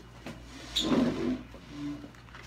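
Handling noise of a phone held close to its microphone: one rubbing knock lasting about half a second around the middle, then a short low hum near the end.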